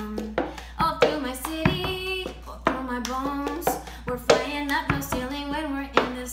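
A woman singing a pop song a cappella while beating the cup-song rhythm: hand claps and a plastic cup slapped, tapped and set down on a table, in a string of sharp hits under the voice.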